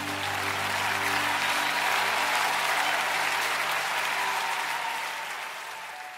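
Audience applause at the end of a live worship song, over the band's last held chord as it dies away. The applause swells about two seconds in and then fades out.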